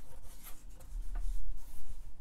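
Pen nib scratching across paper in short sketching strokes, with a low rumble partway through.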